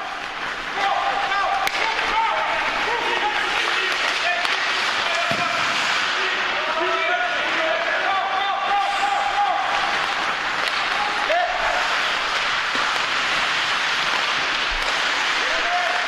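Many voices calling and shouting at once in an echoing ice rink, over a steady rush of noise, as players skate and scrimmage.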